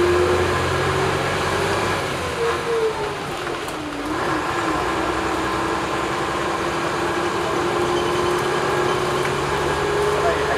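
Interior noise of a vintage single-deck bus under way: the engine and drivetrain run steadily under the rumble of the moving bus. The engine note drops and picks up again about three to four seconds in.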